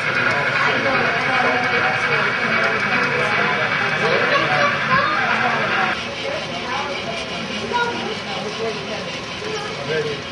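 A model train running on the layout track, a steady whir of its motor and wheels that drops away about six seconds in, under the chatter of visitors and children.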